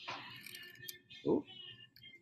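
A knife scoring brittle black walnut veneer along a straight edge: a scratchy cutting sound for about the first second, the cut wandering off along the grain.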